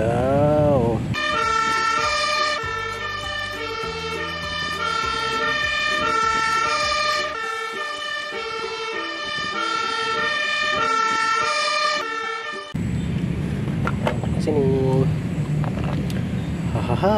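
Fire engine siren sounding, its pitch stepping back and forth between tones, starting about a second in and cutting off suddenly near 13 seconds. A short laugh comes at the start and again near the end.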